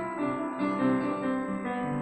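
Upright piano playing a slow passage of held notes and chords.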